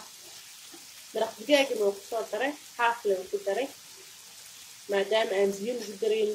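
Onions and sliced meat sizzling in a frying pan while being stirred with a spatula. A woman's voice talks over it in two stretches, from about a second in and again near the end.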